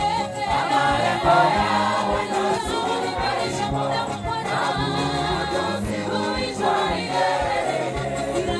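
A gospel choir singing together, many voices at once, over a steady low beat.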